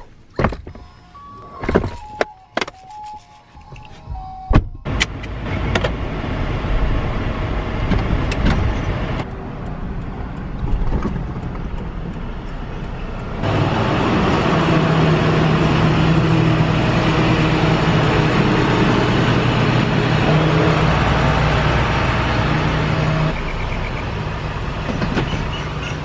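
A few knocks and clicks of car doors and a car seat being handled, then a car driving with steady road and wind noise in the cabin, which gets markedly louder about halfway through with the side window open.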